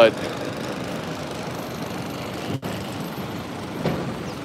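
Steady city street traffic noise from vehicles running nearby. It cuts out for an instant about two and a half seconds in.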